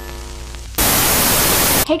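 TV static sound effect: a buzzing hum with steady tones, then about a second of loud white-noise hiss that cuts off suddenly.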